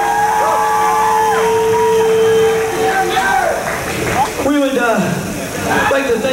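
Crowd at a live metal show cheering, shouting and whooping as a song ends, over a steady held note that cuts off about two and a half seconds in.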